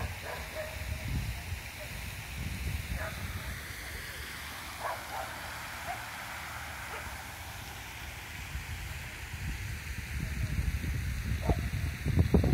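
Outdoor ambience: wind rumbling unsteadily on the microphone, with a few faint, brief sounds in the distance.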